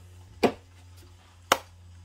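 Two sharp knocks on the tabletop about a second apart, over a low steady hum.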